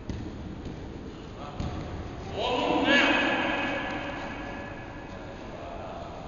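A person's voice in one long drawn-out call, loudest about three seconds in and then fading, after two dull thumps in the first two seconds.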